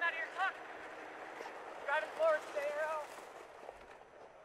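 A ski guide's voice calling instructions to a vision-impaired downhill racer over their helmet communication system, heard in two short bursts over a steady noise that drops away about three seconds in.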